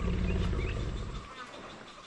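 Bengal tiger growling low and rough for about a second and a half, then fading out.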